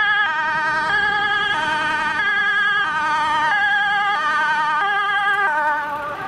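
Fire engine's two-tone siren alternating between a high and a low note about every two-thirds of a second, with the truck's engine running underneath. The truck draws close and passes right by near the end.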